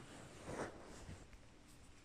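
Faint breathing: two soft breath sounds, the louder one about half a second in.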